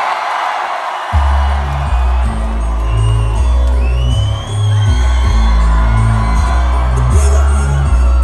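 A concert crowd cheering and screaming. About a second in, a rap track's heavy bass beat kicks in loud over the venue PA and runs on under the crowd.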